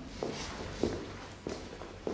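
Footsteps of a person walking across the room: three even steps about 0.6 seconds apart.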